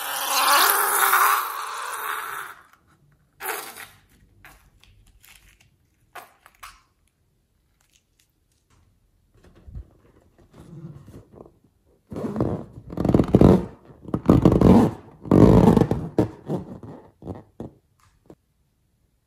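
Latex balloons handled by hand. First a long squelch as liquid slime glue is squeezed out through a balloon's neck into a glass bowl. After a quiet stretch with a few faint clicks comes a run of loud, uneven rubbing as hands squeeze and rub an inflated latex balloon.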